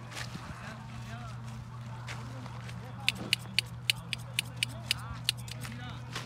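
Quick, sharp clicks of hand shears snipping green onion bunches, about a dozen in a row in the second half, over a steady low hum and faint voices.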